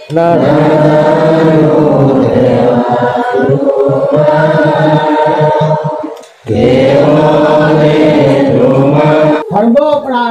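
Several men's voices chanting a devotional prayer together in long, drawn-out phrases, with a short break for breath about six seconds in.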